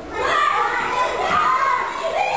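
Children's voices chattering and calling out together, high-pitched and overlapping.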